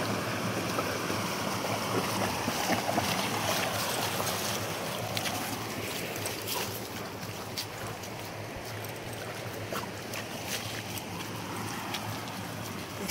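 Shallow creek water running over a rocky bed, with splashing as a large dog wades through it in the first few seconds; the wash eases as the dog leaves the water, with a few light clicks.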